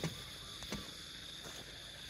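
Insects droning steadily at one high pitch, with footsteps on a path about every three-quarters of a second and faint short chirps over them.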